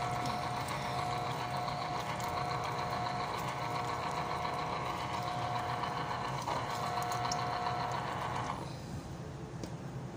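Motor of an electric citrus juicer running steadily while an orange half is pressed onto its spinning reamer, then stopping near the end.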